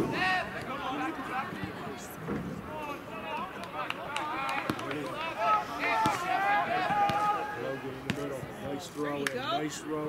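Voices of players and spectators calling out across a soccer field, none close to the microphone, with a few sharp knocks of the soccer ball being kicked scattered through.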